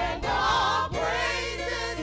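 Gospel praise-and-worship group of several voices singing together over electronic keyboard, with sustained low bass notes under the voices.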